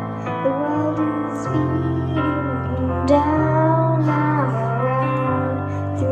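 A girl singing a slow ballad solo into a microphone, her melody sliding and wavering over held accompaniment notes that change every second or two.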